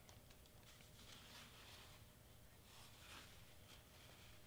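Near silence: room tone with a few faint rustles from a paper towel being handled around a small plastic ink bottle.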